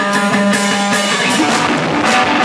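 Live rock band playing loud: electric guitars holding sustained notes over a drum kit, with repeated cymbal strikes, in an instrumental passage with no vocals.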